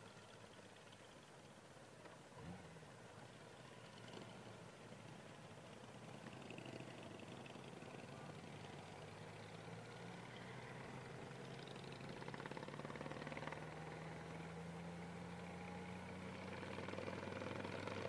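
Faint motorcycle engine and road noise, heard low and muffled. It grows slowly louder, with its low hum rising gently in pitch over the second half as the bike speeds up.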